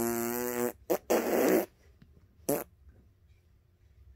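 A low, steady buzzing tone that stops less than a second in, followed by a few short breathy puffs.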